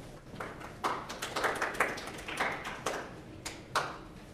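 Small audience applauding: a scattering of hand claps that starts just after the beginning and stops near the end.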